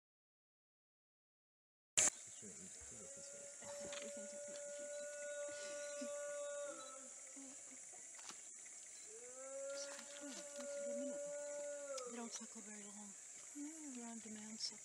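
Infant orangutan whimpering: two long, steady-pitched cries of about four seconds each, a couple of seconds apart. The sound begins with a click about two seconds in.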